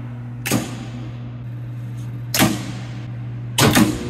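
Steady low electrical hum from the Marx bank's high-voltage charging supply as charging begins. Sharp clicks with a short ringing tail come about half a second in and again midway, and a quick cluster of them comes near the end: console switches and relays being thrown.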